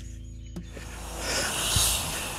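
A bicycle riding past close by: a rush of tyre noise swells over the second half and peaks near the end. Soft background music with steady low notes plays underneath.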